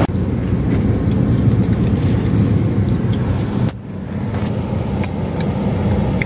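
Steady low rumble of road vehicles, with a few faint clicks; the sound breaks off briefly and picks up again a little under four seconds in.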